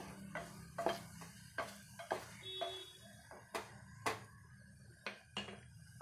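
A spoon stirring and knocking against the metal side of a pressure cooker as chopped spinach is mixed into onion-tomato masala: about a dozen irregular sharp clicks and knocks, over a low steady hum.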